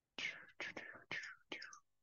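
A man whispering under his breath: four short, soft whispered syllables.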